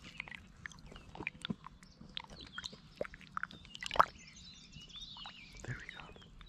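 Small splashes and drips of water close to the microphone as a largemouth bass is held at the surface and released, with one louder splash about four seconds in.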